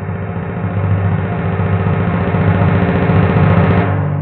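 Musical transition sting: a low, rumbling drum roll over a sustained low chord, growing louder and dying away near the end.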